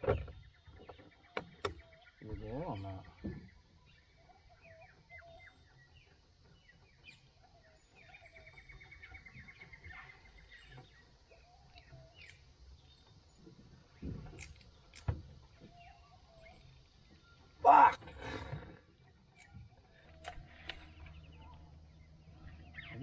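Birds calling: scattered short repeated calls, with a quick run of rapid notes about eight seconds in. A brief low voice sound comes a couple of seconds in, and a louder short burst about three-quarters of the way through.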